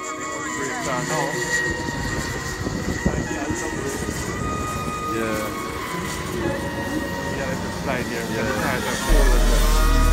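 Racing kart engines whining steadily from out on the track, with voices in the background. Near the end a heavy bass line of music cuts in suddenly and becomes the loudest sound.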